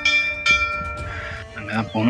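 A bell rings in the backing track of a devotional song. It is struck about half a second in and again near the end, and each strike leaves a long ringing tone of several pitches that slowly fades between sung lines.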